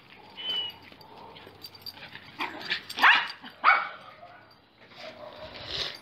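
Two small-to-medium dogs play-fighting, with a few short, sharp barks; the loudest come about three seconds in and again just after.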